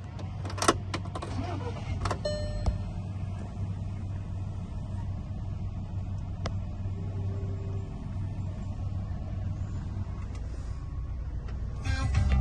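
Volkswagen Touran 1.4 TSI four-cylinder petrol engine idling in Park, heard from inside the cabin as a steady low hum. A few sharp clicks come in the first few seconds.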